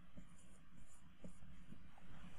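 Dry-erase marker writing four digits on a whiteboard: a few short, faint strokes.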